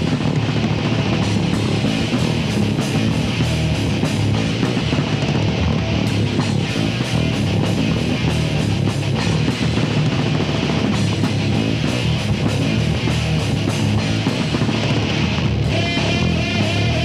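Heavy metal band playing live: distorted electric guitar, bass guitar and drum kit in a dense, continuous heavy passage.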